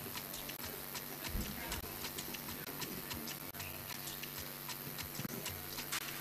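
Faint, quick, even ticking, about four to five clicks a second, over a steady low electrical hum.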